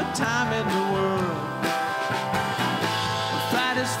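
Live country-folk band playing: strummed acoustic guitar, electric bass and drum kit, with a man's voice singing over it in the first second or so and again near the end.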